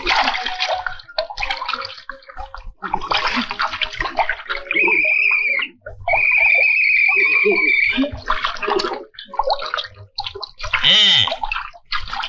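Water splashing and sloshing, mixed with a cartoon character's wordless vocal sounds. In the middle, a high, steady whistle-like tone is held twice, first for about a second and then for about two seconds.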